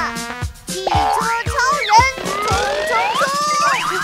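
Children's cartoon soundtrack: bright music with sound effects that slide up and down in pitch, and a cheerful voice.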